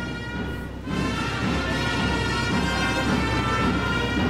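A Boys' Brigade marching band strikes up about a second in, playing long held notes over a heavy low end.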